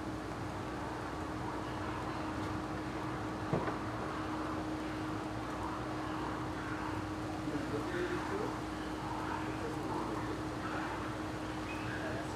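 Steady background noise with a constant low hum, a single sharp click about three and a half seconds in, and faint, distant voices talking in the second half.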